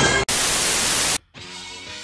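Theme music cuts off into about a second of loud, even static hiss, which stops abruptly. Faint background music follows.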